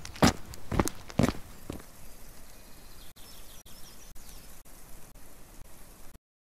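Footsteps at a walking pace, about two a second, growing fainter and ending a couple of seconds in. After them only a faint steady background hiss remains.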